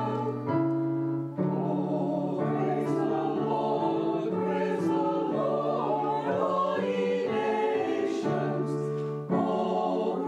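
A small mixed choir of men's and women's voices singing a church anthem in harmony, holding sustained chords, with short breaks between phrases about a second and a half in and near the end.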